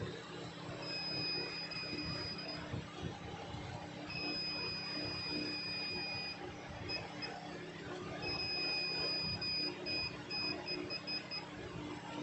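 Digital multimeter's continuity buzzer beeping as its probes bridge a capacitor on a phone logic board: a steady high beep held about two seconds at a time, three times, then breaking into short stuttering beeps. The beep means continuity across the capacitor: it is shorted.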